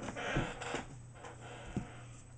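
Pokémon trading cards being handled: a short papery slide and rustle in the first second, then a light click, over a low steady hum.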